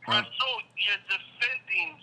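Speech only: a man talking over a phone line, his voice thin and telephone-quality.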